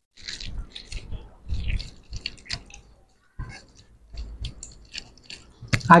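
Close-up chewing of mouthfuls of rice and soft, wet squishing of fingers kneading rice on plates, coming as irregular small clicks and smacks.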